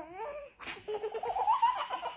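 Baby laughing: a short squeal at the start, then, after a brief sharp noise, a long run of quick giggles.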